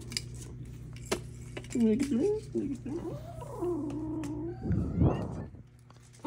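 A black kitten's tiny growl: a few short calls that bend up and down, then a longer held, wavering one. It is an angry, defensive reaction to having something taken away from it. A short noisy burst follows near the end.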